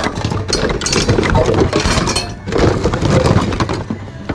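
Hard plastic and metal housewares in a thrift-store bin being rummaged through by hand, clattering and clinking against each other in quick, uneven knocks, with a short lull about two and a half seconds in.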